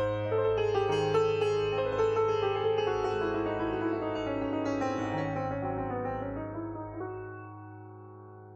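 Steinway grand piano playing a quick flow of notes over a sustained low bass note, then dying away over the last two seconds.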